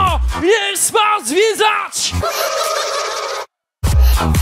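Electronic dance music in a breakdown. The kick and bass drop out and a pitched lead sound bends up and down in about five short swoops. A held buzzy chord follows, then a brief dead-silent gap, and the thumping beat comes back in just before the end.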